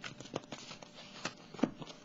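Tarot cards being handled as a card is drawn from the deck: a light papery rustle and sliding with a series of soft taps and clicks, the sharpest about one and a half seconds in.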